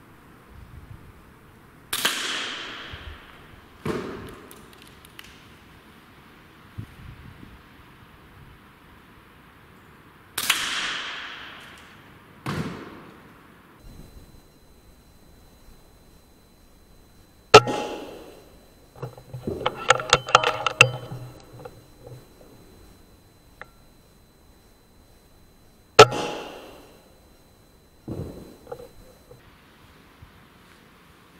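A series of quiet shots from an Air Arms S510 .177 PCP air rifle, each a sharp crack. Some are followed about two seconds later by a thud or clang from above, and a longer burst of clattering comes around twenty seconds in.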